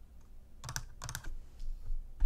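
A few faint computer keyboard key clicks in two short clusters, typing at the desk.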